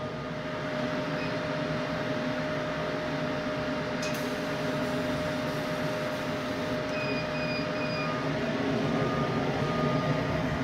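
Thunder Laser CO2 laser cutter running a test cut through 1/8-inch plastic sign sheet with low air assist: a steady machine hum with a thin steady whine that stops about seven seconds in, and a brief click about four seconds in.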